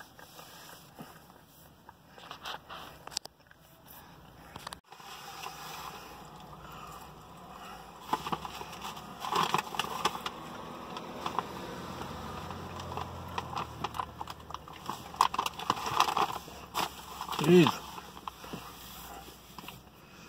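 Paper fast-food bag crinkling and rustling as loose fries are pulled out and eaten, with mouth and chewing sounds in bursts. A short murmured vocal sound comes near the end.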